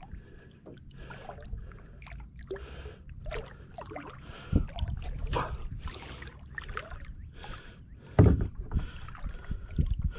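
Water splashing and sloshing around a plastic kayak as a hooked snook thrashes at the surface beside it, with irregular knocks and a loud thump about eight seconds in.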